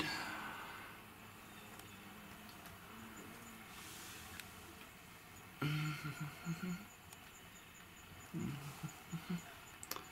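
Bald-faced hornets buzzing as they fly close past a large paper nest, in two spells of brief, broken buzzes: one about halfway through and one near the end, the second wavering up and down in pitch.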